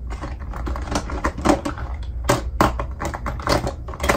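Quick, irregular clicks and clatter of small hard plastic makeup containers being rummaged through and picked up, over a low steady hum.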